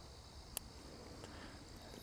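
Faint steady background hiss with a single small sharp click about half a second in: a tool of a Victorinox Midnite Mini Champ pocket knife clicking into place as it is folded or unfolded.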